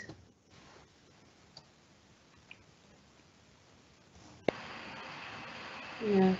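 Near silence on a muted video-call line with a couple of faint ticks, then about four and a half seconds in a sharp click and a steady hiss begins as a microphone comes unmuted and the open line's background noise comes through.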